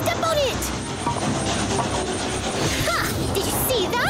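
Cartoon soundtrack: background music and brief voiced exclamations over a low, steady rumble from the moving magic stove.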